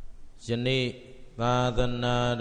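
Buddhist monk chanting into a microphone in a level monotone: a short phrase about half a second in, then a longer, drawn-out one from about one and a half seconds in.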